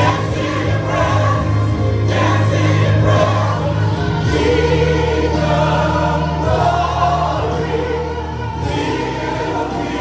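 Gospel praise-and-worship song: several voices singing through microphones over instrumental accompaniment with a sustained bass line.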